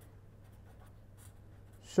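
Pen writing on paper: a few faint, short scratching strokes.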